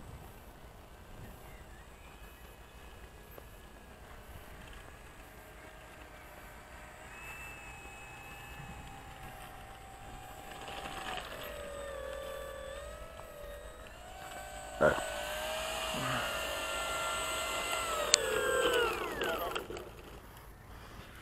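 Electric motor and propeller of a Durafly Slow Poke RC plane taxiing, a whine that shifts in pitch with the throttle and grows louder as it comes near. It winds down with a falling pitch near the end. A single knock about fifteen seconds in.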